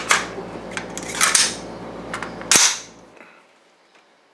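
Metallic clicks and snaps from an AR-15 being handled as a polymer magazine is seated in its magazine well. The loudest is a single sharp snap with a short ring about two and a half seconds in.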